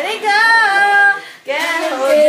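A young girl singing unaccompanied in a high voice: one long held note, a short break a little after a second, then a new note sliding up.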